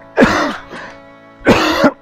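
A man coughing hard twice, the sign of an asthma attack.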